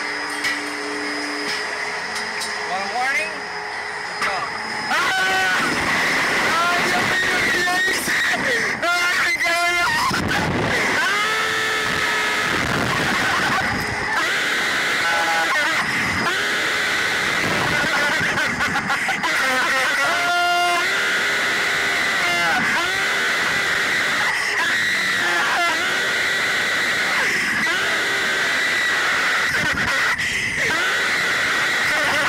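Two teenage riders screaming and yelling on a slingshot ride, starting about five seconds in as they are launched, with music playing underneath.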